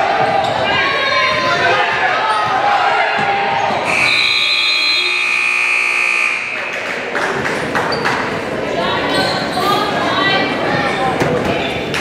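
Gymnasium scoreboard buzzer sounding one steady tone for about two and a half seconds, starting about four seconds in, over spectators' voices and shouts; it marks the end of the game. Before it, a basketball is dribbled on the hardwood floor.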